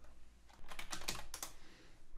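Computer keyboard typing: a quick run of key clicks starting about half a second in and lasting about a second, as a short word is typed.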